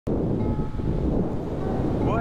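Wind noise on a helmet microphone while riding a Honda Grom at road speed, with the small single-cylinder engine running steadily underneath.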